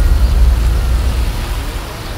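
A car driving: a deep engine rumble with road noise, strongest at first and easing off over the two seconds.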